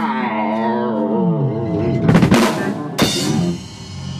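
Live rock band closing out a song: a held, wavering note slides down in pitch over the bass, then a drum fill about two seconds in and a final cymbal crash about three seconds in that rings out.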